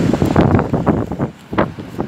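Wind buffeting the microphone, a loud, uneven rumble with irregular rustles and thumps.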